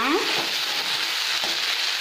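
Sliced okra frying in oil in a kadai: a steady sizzle, with a metal spoon stirring through the pieces.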